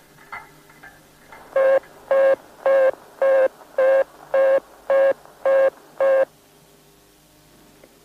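American telephone tone signalling that the lines or equipment are engaged (network congestion): nine short, even beeps, a little under two a second, starting about a second and a half in and stopping about six seconds in.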